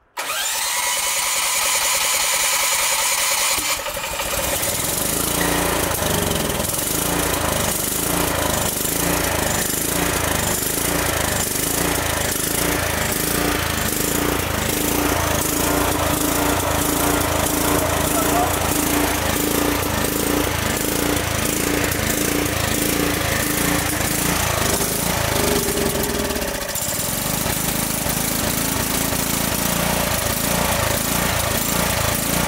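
Brand-new electric-start petrol generator engine on its first start: the starter turns it over for about four seconds and it catches, then runs with a fast, rough firing beat. Near the end its sound changes and dips briefly.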